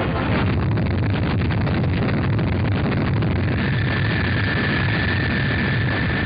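Delta rocket engine at liftoff: a loud, steady, crackling rush of exhaust noise. A steady high whine joins about three and a half seconds in.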